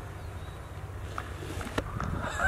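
Quiet outdoor background: a low steady rumble with a couple of faint ticks in the second half.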